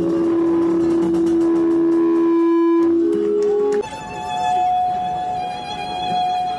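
Live flamenco fusion music with Japanese traditional instruments (shamisen and flute). A long held low note stops sharply about four seconds in, and a high, steady held note follows.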